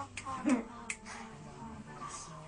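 Two sharp clicks about three quarters of a second apart, with a short voice sound between them.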